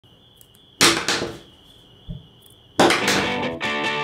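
A thin, steady high tone, broken by a whoosh about a second in and a low thump around two seconds. Near three seconds a loud hit starts music with electric guitar.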